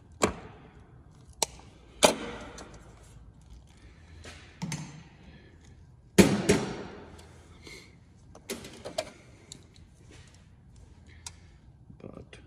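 A hand wire stripper-crimper tool clicking and snapping as it is worked on thin wire leads, with handling noise from the wires and connector: a handful of separate sharp clicks, the loudest about six seconds in.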